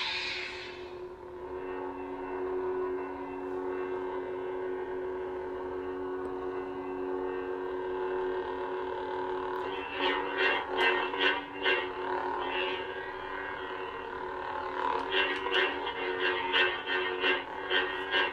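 Lightsaber replica's Proffie sound board playing the MPP Vader sound font: a short ignition burst at the start, then a steady low electric hum. From about ten seconds in, and again near the end, runs of quick sharp swing and clash effects play over the hum.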